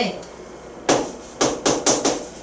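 A marker tip knocking against a hard classroom board as characters are written. There are four sharp taps in about a second, after a quiet start.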